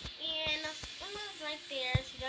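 A young girl singing a few high, wavering notes without clear words. A few knocks from the handheld camera, the loudest near the end.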